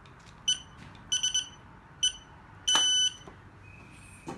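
Fingerprint access-control reader beeping as a finger is pressed on its sensor: one short beep, then three quick beeps, another short beep, and one longer beep near the end, all on the same high pitch.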